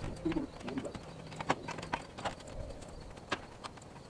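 Irregular knocks and clanks of aluminium ladders as men step down the rungs, with two short low hums near the start.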